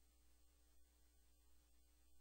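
Near silence: a steady low hum with very faint music.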